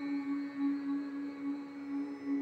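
A singer holds one long, steady note over a drone in Carnatic-style devotional chant music.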